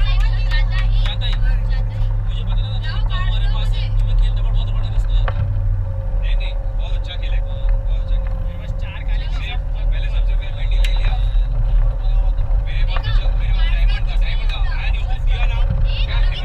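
A moving bus's engine and road noise drone steadily inside the passenger cabin, under chatter from several passengers.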